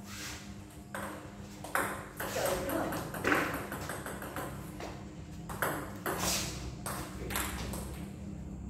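Table tennis ball clicking off the rackets and the table during play: a string of sharp, light clicks at irregular intervals.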